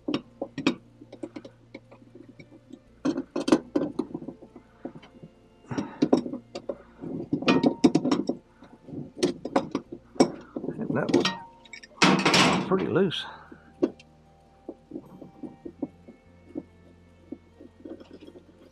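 Adjustable wrench clicking and knocking on the drive-shaft nut of a Whirlpool Cabrio washer as the nut is worked off, with a louder scraping rattle of metal about twelve seconds in.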